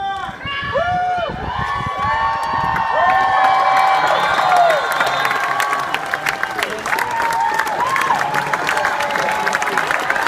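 Crowd cheering, many voices shouting and whooping at once, with clapping building from about halfway through.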